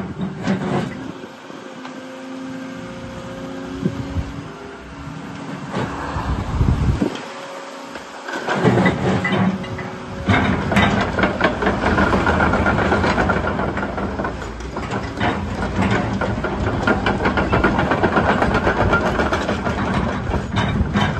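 Volvo EC140EL tracked excavator running as its boom, arm and bucket are worked: a steady whine over the engine in the first few seconds, then louder and rougher with rattling from a little before halfway.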